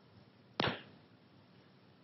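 A single short, sharp impact about half a second in, fading quickly, against faint room tone.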